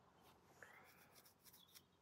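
Near silence: room tone with a few faint clicks and rustles in the middle of the pause.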